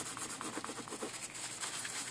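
A paper Kimwipe damp with isopropyl alcohol being scrubbed back and forth over a printed circuit board, cleaning off flux residue. Faint, rapid rubbing strokes.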